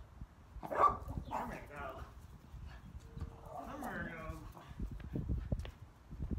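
Brief indistinct voice sounds, then a quick run of soft low thumps near the end: footsteps on concrete as a man gets up from a floor stretch.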